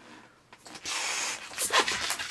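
Air rushing into a long twisting balloon as it is inflated: one steady hiss of just under a second, then a few shorter gusts near the end.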